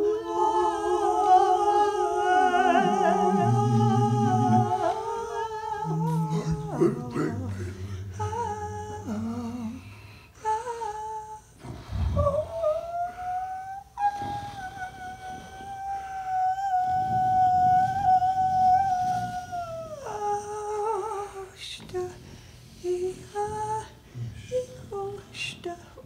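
Wordless improvised vocal music from three voices: overlapping held, hummed and sung tones that waver in pitch, with low voiced notes underneath in the first half. About halfway, one voice swoops up into a long high note, holds it for several seconds, and drops away near the end.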